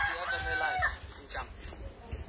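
A long drawn-out animal call with a clear pitch, ending about a second in.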